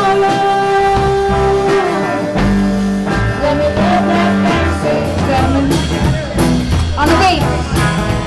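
Live blues-rock band playing, with upright bass, drum kit, guitar and singing. A long note is held through the first two seconds, and the drum strikes grow stronger in the second half.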